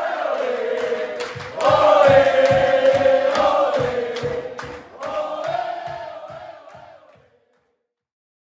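A crowd singing a held chant in unison over a steady low beat of about three thumps a second. It swells about a second and a half in, then fades out about seven seconds in.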